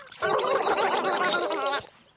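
Cartoon flamingos gargling their tea: a wet, bubbly voiced gargle lasting about a second and a half, ending on a short pitched vocal tail.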